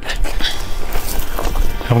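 Footsteps crunching and sliding over loose rocks and dry brush on a steep slope, with brush rustling and handling rumble close to the microphone.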